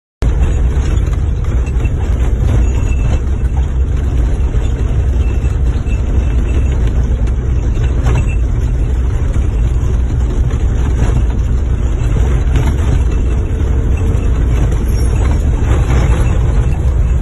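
Steady low rumble of a vehicle being driven, heard from inside the cab: engine and road noise, with a few faint knocks.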